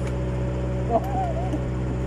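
A steady engine hum runs throughout, with a few spoken words and a brief click near the middle.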